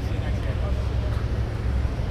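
Supercar engines idling with a steady low rumble.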